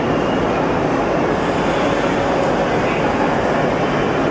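WDM-3A diesel-electric locomotive's ALCO 16-cylinder engine running steadily as the locomotive moves slowly along the track.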